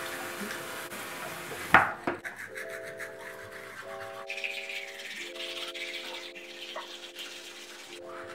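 Manual toothbrushes scrubbing teeth, a soft scratchy sound, under background music of held chords that change every second or so. A single short sharp knock comes just before two seconds in.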